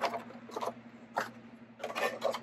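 Faint scratchy handling noises with a few light taps, from a vinyl figure and its cardboard box being handled.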